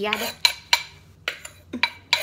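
Metal spoon scraping and knocking against the inside of a clay mortar as green papaya salad is scraped out. About four sharp knocks and scrapes, spaced out.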